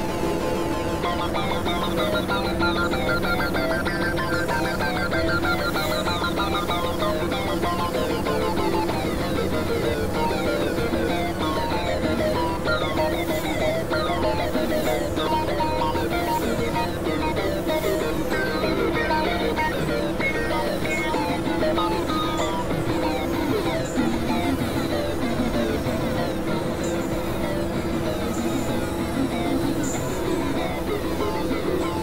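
Experimental electronic synthesizer music: steady low drones held throughout, under a dense stream of short, shifting higher tones.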